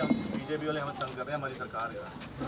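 Several people talking at once in the background, their words unclear.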